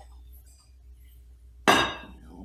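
Faint room hum, then near the end a single sharp clank of a saucepan knocking against a ceramic serving bowl as the food is tipped out, ringing briefly.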